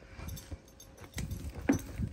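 Kangal shepherd dog sniffing hard with its nose pushed into loose soil, hunting for a mole. A few short sharp sounds stand out, the loudest shortly before the end.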